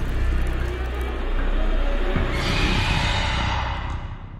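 Horror film soundtrack: a low rumbling drone, joined about halfway through by a shrill, high layer of several tones that swells like a creature's screech.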